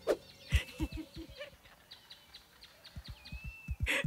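A series of soft, low thuds in two irregular runs, after a couple of sharp clicks at the start, with faint bird chirps behind.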